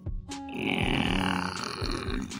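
Background music with a long, rough, raspy comedy sound effect that starts about half a second in and lasts over a second.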